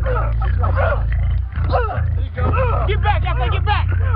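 Men yelling and shouting in quick, wordless bursts that rise and fall in pitch, denser in the second half, over a steady low rumble.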